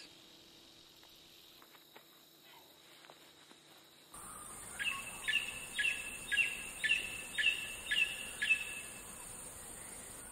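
A faint quiet stretch with a few soft clicks. About four seconds in, a steady high insect buzz starts, and a bird calls a run of about eight short, falling notes, roughly two a second.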